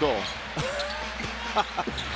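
Game broadcast sound from an indoor basketball arena: a basketball dribbled on the hardwood court, a few sharp knocks, over a steady low crowd hum.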